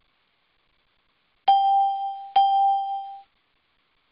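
Two bell-like chime strikes about a second apart, each ringing at one clear pitch and fading; the second is cut off abruptly.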